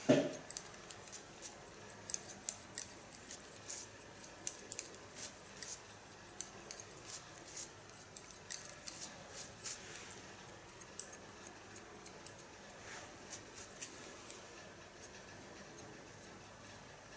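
Kyone hairdressing scissors cutting short hair along a comb at the nape: a long run of quick, crisp little snips and clicks, irregular in rhythm, thinning out over the last few seconds.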